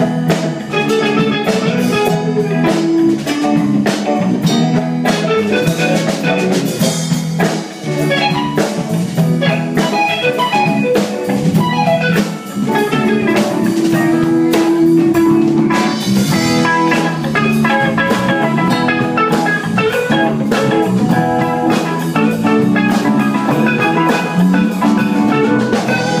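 A live rock band playing an instrumental passage: electric guitars, electric bass, banjo and a drum kit, with a steady driving beat.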